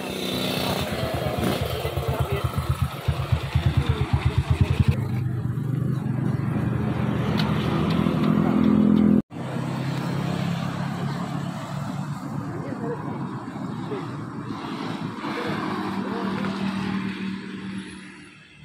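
Motorcycle engine idling with a slow, uneven beat of about six pulses a second, then running more steadily; an abrupt cut about nine seconds in switches to another steadily running engine.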